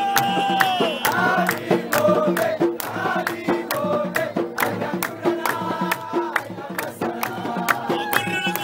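Live Nubian wedding-procession music: men singing together in chorus over a steady beat of sharp hand claps.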